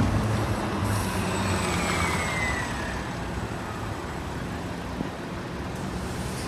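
Articulated hybrid-electric city bus pulling past close by, its drivetrain running with a steady low hum over road noise, growing fainter as it moves off. A high whine slides down in pitch about two seconds in.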